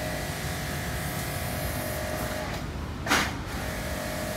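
A steady low background rumble with a faint hum, broken about three seconds in by one short, sharp, noisy burst, the loudest sound here.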